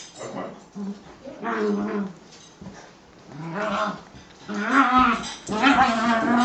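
Two small dogs play-fighting, growling and whining in several short bouts, busiest in the last second or two.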